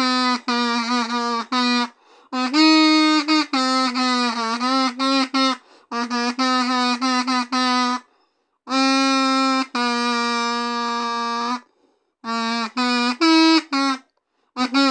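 Kazoo buzzing out a song melody in phrases of quick short notes with brief pauses between them, then one long held note near the end.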